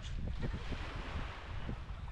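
Wind buffeting the microphone, a steady low rumble, over the soft wash of small waves lapping at the shoreline.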